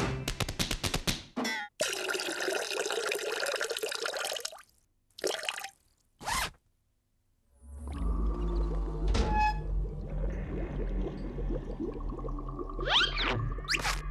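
Cartoon sound effects: a quick run of rapid taps, then about three seconds of dense rushing noise and two short bursts. After a brief silence comes low, dark music over a deep drone, with a sweeping effect near the end.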